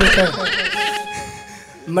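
A wavering vocal sound, shaky in pitch, fading out within about a second, followed by a faint held note.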